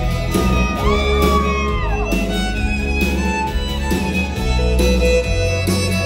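Live country band's instrumental break led by a fiddle solo over acoustic guitar and band backing. The fiddle slides up into a long held note that drops away about two seconds in, then plays on in shorter notes.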